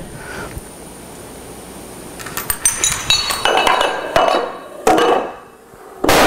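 A chain of dominoes, each one and a half times larger than the last, toppling in sequence. About two seconds in, small ringing clinks start from the tiny pieces. Heavier knocks follow, each louder and lower than the one before, and the impact of the largest domino, over a metre tall, starts right at the end.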